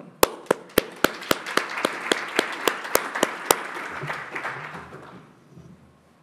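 Conference audience applauding, with a few sharp close claps standing out over the clapping of the room; the applause dies away about five seconds in.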